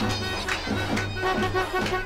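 Davul and zurna playing a lively Turkish folk tune: the zurna's shrill held reed notes over steady davul beats, about two a second. A man laughs briefly near the end.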